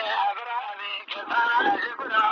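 A man singing a Kurdish folk song in the dengbêj style, his voice wavering and ornamented, with a brief break for breath about halfway through.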